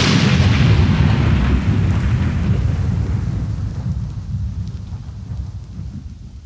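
Explosion-like sound effect in an electronic dance track: a burst of noise with a deep rumble that slowly fades away.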